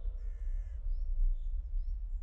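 A bird gives one drawn-out call with several stacked tones in the first second. Several short, high chirps from small birds follow, over a steady low rumble.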